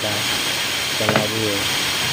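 Steady hiss of workshop background noise with a faint high whine and low hum, and a short voice about halfway through.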